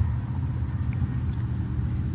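A steady low rumble in the background, with no other event standing out.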